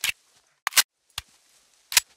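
A few sharp, irregularly spaced metallic clicks, one of them a quick double: sound effects of a gun being readied to fire.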